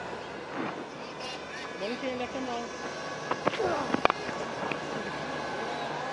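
Field sound from a cricket ground: steady background hiss with faint distant shouts from players, and a few sharp knocks, the loudest about four seconds in.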